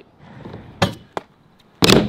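Stunt scooter knocking on a skatepark ramp: a sharp knock about a second in, then a louder slap near the end as the rider drops in.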